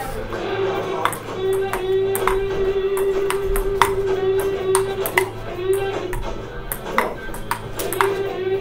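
Ping-pong ball rally on classroom tables: sharp clicks of the ball off paddles and tabletop, about two a second. Background music with a long held note underneath.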